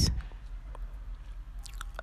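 A pause between spoken sentences: a low steady hum with a few faint mouth clicks, and a short cluster of clicks and breath near the end just before the voice resumes.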